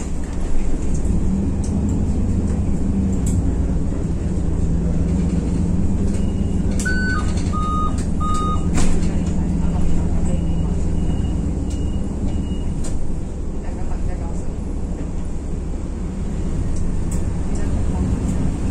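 City bus running steadily along the road, heard from inside the cabin near the driver, a low hum over road noise. About seven seconds in, a short run of electronic beeps sounds: one higher, then three lower.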